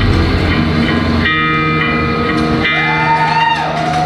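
Live hardcore punk band playing loud, with distorted electric guitar to the fore; about a second in the dense full-band sound thins to held guitar notes that bend up and down in pitch.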